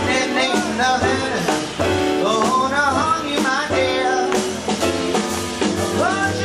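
Live jazz: a woman sings with piano, double bass and drums, her voice sliding and bending in pitch over the band.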